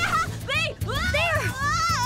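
Cartoon background music with a steady low bass under a high-pitched voice that rises and falls in short wordless cries.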